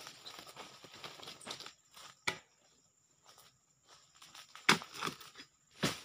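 Long-poled dodos chisel working at the base of oil palm fronds: rustling and tearing of palm leaves, then a few sharp strikes, the loudest about three quarters of the way through.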